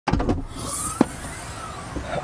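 A car's rear liftgate opening: a clatter of latch clicks at the start, a faint rising whine as the hatch lifts, and a sharp click about a second in.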